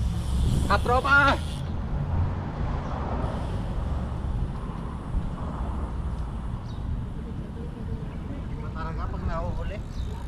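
Steady low rumble of outdoor road and traffic noise, with a word spoken about a second in and faint voices near the end.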